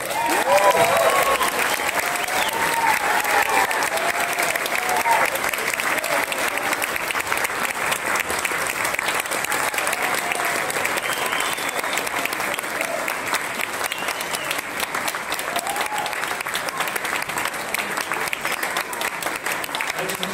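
Audience applauding, with scattered whoops and shouts over the clapping, most of them in the first few seconds. The applause is strongest about a second in and eases off gradually.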